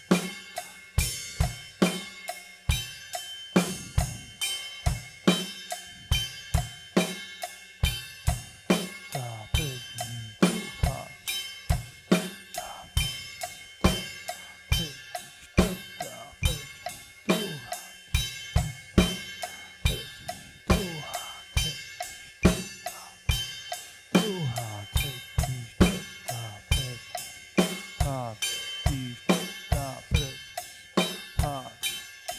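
Drum kit playing a slow, steady groove around 70 beats a minute: bass drum and snare under eighth notes on the ride cymbal, which alternate between the body of the ride, struck with the stick tip, and the bell, struck with the shoulder of the stick.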